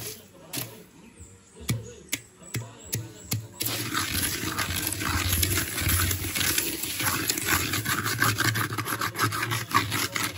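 Dry granules being stirred and scraped around a large aluminium pan with a metal rod: a few separate clicks at first, then from about three and a half seconds in a steady, dense gritty rustle of grains sliding and rattling against the metal.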